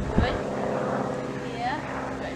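A steady mechanical hum with several fixed pitches, like a running motor, with a brief thump just after the start and a few short chirps.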